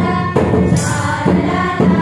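Group of girls singing a Manipuri folk song in unison, accompanied by harmonium, a barrel drum (dholak) and tambourine jingles. The drum strokes fall on a steady beat, about two a second.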